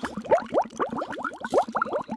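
Bubbling-water sound effect: a fast, busy run of short rising blips like bubbles popping.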